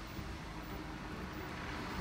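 Steady low outdoor background rumble with no distinct sounds standing out.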